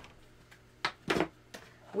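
Big Shot die-cutting machine being set down and shifted into position on a tabletop: two short knocks in quick succession about a second in, then a fainter one.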